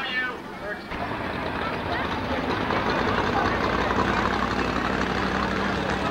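Dirt-track modified race cars' engines running at racing speed around the track, heard as a dense, steady rumble from the grandstand. A moment of PA announcer speech sits at the very start.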